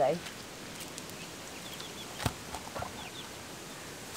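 Quiet outdoor background with a few faint, short high bird chirps spread through the middle and later part, and a single sharp click a little past halfway.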